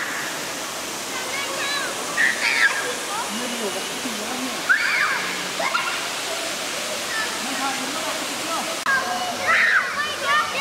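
Steady rush of running creek water, with people's and children's voices calling out now and then over it.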